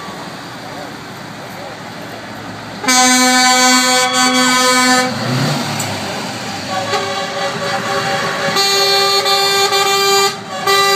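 Lorries driving past in a convoy with engines running, and air horns sounding: a loud long blast about three seconds in lasting about two seconds, then a second, higher-pitched horn starting around seven seconds in and growing louder towards the end.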